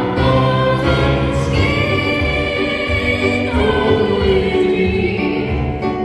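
A woman singing into a microphone, amplified through loudspeakers, with instrumental accompaniment. She holds long notes and moves to a new pitch every second or two.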